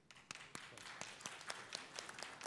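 Audience applauding: a dense patter of many hand claps that starts suddenly.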